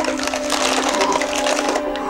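A paper bag being rummaged, a dense, loud crinkling and crackling that stops shortly before the end.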